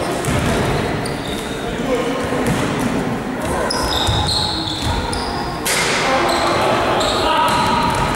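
A basketball bouncing on a hardwood gym floor during play, with short high sneaker squeaks from players cutting and running, and players' voices calling out, all echoing in a large sports hall.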